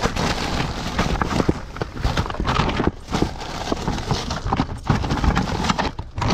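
Rummaging through a plastic bag of toys and plastic Easter eggs: the bag rustles and crinkles, with many irregular light knocks and clatters of hard plastic items.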